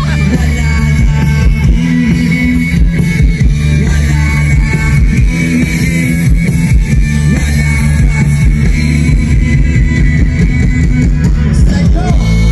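Live rock band playing loud through a concert sound system, with electric guitars, heavy bass and a drum kit keeping a steady beat.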